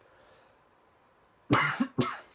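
A man coughing, a short run of loud coughs into his fist starting about one and a half seconds in.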